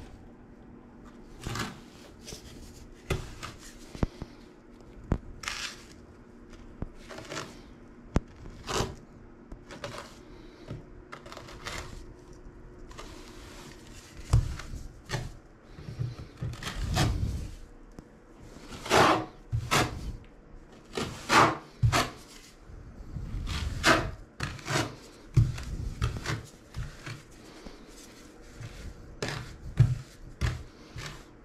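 A small hand trowel scraping and spreading mortar on a shower wall, blade against the wall, in irregular strokes. The strokes come louder and closer together in the second half.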